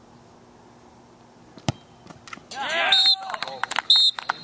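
A single sharp thud of a soccer ball being struck for a penalty kick a little before halfway, followed about a second later by men shouting and cheering as the winning penalty goes in.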